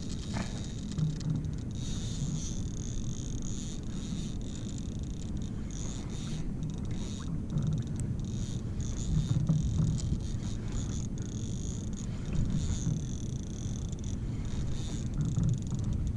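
Fishing reel buzzing in stretches at a high, steady pitch as the hooked shark pulls line from the drag, over a low steady rumble.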